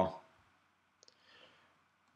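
A faint click about a second in, then a brief soft scratch: a stylus tapping down and writing a short character on a digital tablet.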